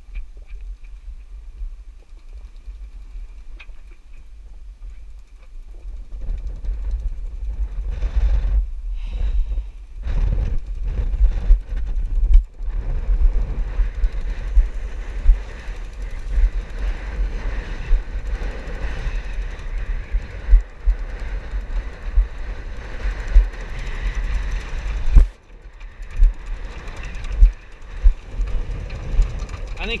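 Wind buffeting the microphone over the rush of waves and water along a small sailboat's hull in heavy seas, quieter at first and strong and gusty from about six seconds in, with a single sharp knock near the end.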